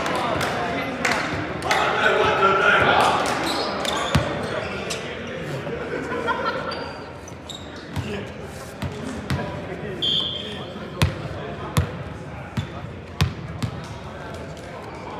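Players' voices in a large, echoing gym, then a ball bouncing on the hardwood court floor, sharp single bounces about once a second in the second half.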